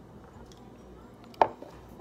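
A ceramic mug set down on a hard surface: one sharp knock about one and a half seconds in, after a stretch of quiet room tone.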